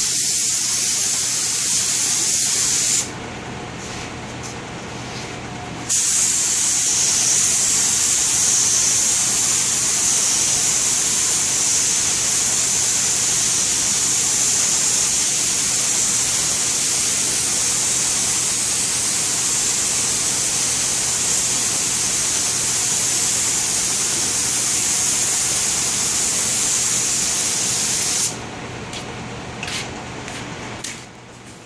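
Compressed-air spray gun with a siphon-feed cup, spraying finish: a loud, steady hiss of atomising air. The hiss stops for about three seconds a few seconds in, resumes, and cuts off shortly before the end.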